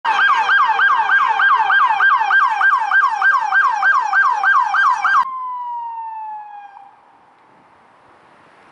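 Police car siren in a fast yelp, about three sweeps a second. About five seconds in it cuts off, leaving a single tone that slides slowly down in pitch and fades out, with faint traffic noise after.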